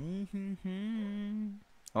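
A man humming with closed lips, a low, nearly level note broken into three short joined parts, lasting about a second and a half before stopping.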